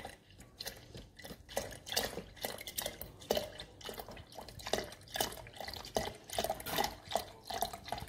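Cold milk poured from a screw-cap carton into a partly filled glass jug, glugging and splashing in a quick, irregular run of short gurgles.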